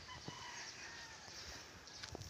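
Faint distant bird calls, a few short thin cries in the first second, over quiet outdoor background with some low thumps.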